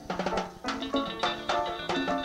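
Live chicha band music: timbales struck with sticks in a quick rhythm over sustained melodic instrument notes.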